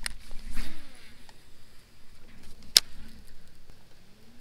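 Baitcasting rod and reel being handled, with one sharp click a little before three seconds in and a low rumble during the first second.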